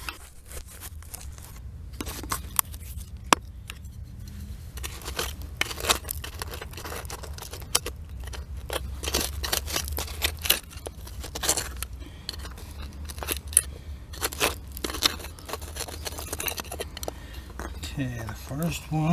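A small metal hand digging tool scraping and picking at hard-packed dump soil around buried glass bottles, in irregular sharp scrapes and clicks over a steady low rumble.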